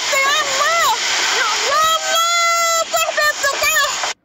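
Rushing floodwater flowing through a street, with a high-pitched voice calling out loudly over it. One call about two seconds in is held on a steady pitch.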